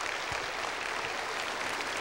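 Congregation applauding steadily.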